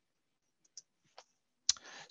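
Mostly near silence, broken by two faint short clicks about a second in, then a sharper click and a short breath just before speech resumes.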